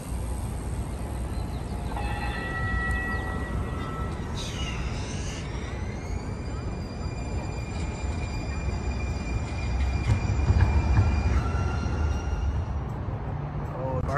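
A light-rail train passing on a city street: a steady low rumble that swells about ten seconds in, with high steady squealing tones. A whine rises around four to six seconds in and holds level before cutting off near the end.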